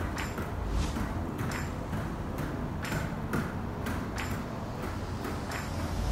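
A small ball being passed from hand to hand around the legs, heard as soft irregular taps, about one or two a second, as it meets each hand.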